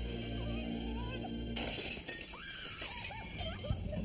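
Tense background music, then about a second and a half in a sudden loud crash with a hissing high end, with high wavering tones over it.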